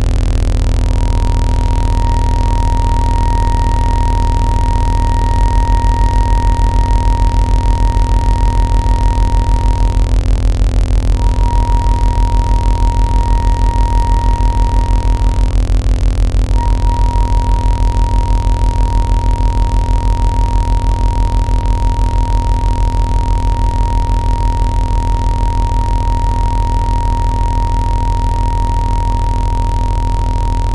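Contemporary chamber music for clarinet, cello, bass flute and electronics: a loud electronic low hum and noise, joined about five seconds in by a deep pulsing sine tone. Over it a clarinet holds one high note, breaking off briefly twice.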